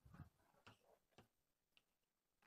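Near silence with four faint taps: a duller knock at the start, then three short sharp ticks roughly half a second apart.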